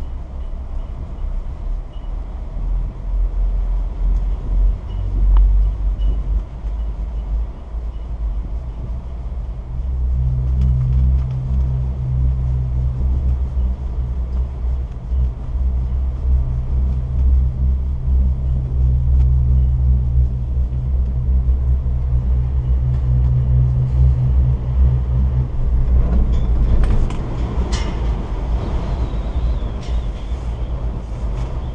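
Steady low rumble of a ride on a Doppelmayr chairlift, heard from the chair under its closed bubble hood. It grows louder about ten seconds in, and a few rattles or knocks come near the end.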